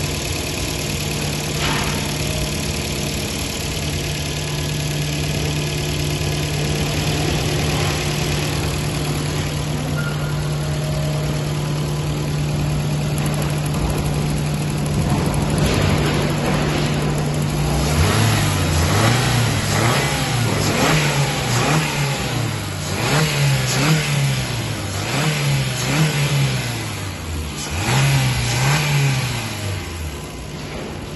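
Honda Insight ZE2's 1.3-litre LDA four-cylinder engine idling steadily, then revved up and back down several times over the last dozen seconds.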